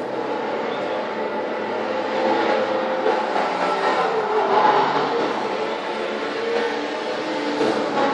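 Race car sound effects from a motorsport promo film, played over a ballroom's PA system: a dense, rushing vehicle noise that builds over the first couple of seconds and then holds.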